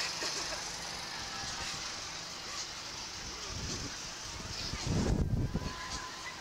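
Rushing wind noise on the ride-mounted camera's microphone as the Slingshot capsule swings, with a louder low buffeting rumble about five seconds in.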